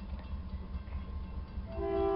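Low steady rumble, then near the end a diesel locomotive's air horn starts to blow: a held chord of several notes that grows louder.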